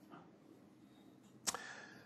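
Quiet room tone with a single sharp click about one and a half seconds in, followed by a brief faint ring.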